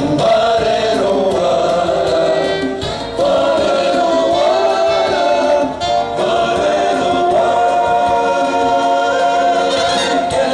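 Live band music with several voices singing held notes in close harmony, breaking off briefly twice.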